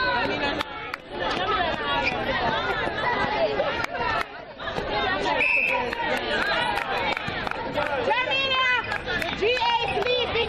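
Many overlapping voices of spectators and players chattering and calling out around a netball court, with no single clear speaker. A brief steady high tone sounds about halfway through.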